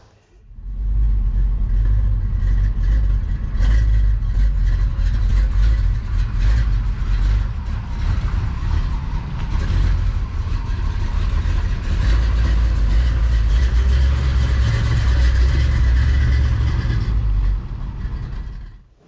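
A 1967 Chevrolet C10 pickup's 454 big-block V8 running with a steady low exhaust rumble as the truck drives past, fading shortly before the end.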